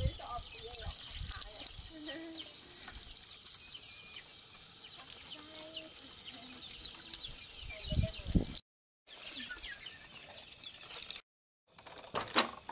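Chickens: a steady run of short, high, falling peeps, with a few lower clucks mixed in.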